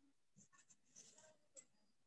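Near silence, with a few very faint short ticks.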